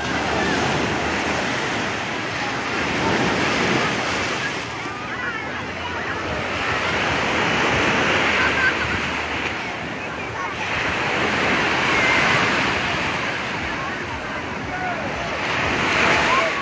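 Small sea waves breaking on a sandy shore, the wash swelling and falling back about every four seconds, over the chatter of a crowded beach.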